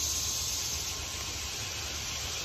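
Steady outdoor background: an even, high insect chorus over a low rumble, with no other event standing out.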